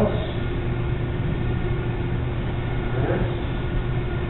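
Steady low hum of room noise with a few faint held tones, unchanging throughout, with a faint brief sound about three seconds in.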